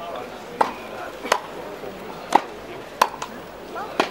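Tennis ball struck back and forth by rackets in a quick rally: about five sharp pops, roughly one every second, over a low murmur of spectators.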